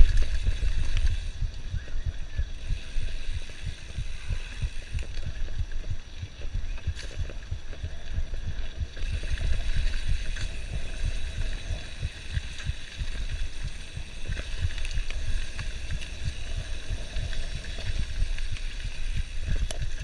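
Wind buffeting the camera microphone over the low, uneven rumble and rattle of a mountain bike descending a rough dirt trail at speed.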